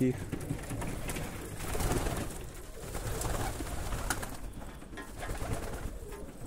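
Domestic pigeons cooing in an aviary.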